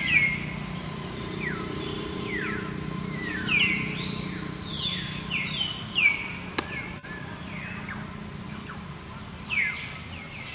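Short, high-pitched animal calls, each sliding down in pitch, repeated irregularly over a steady low hum.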